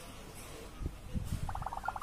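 A brief pause in a man's talk: low room hum with a few soft, low thumps about a second in, then his voice starting again near the end.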